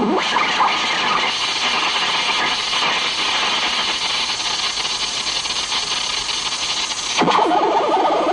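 Harsh, hissy electronic noise from a homemade circuit, held steady for most of the time. About seven seconds in it changes to a rapid, warbling sweep lower in pitch.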